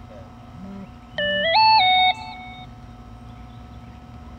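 A short electronic tone sequence of three flat notes, low, higher, then slightly lower, lasting about a second and much louder than the background.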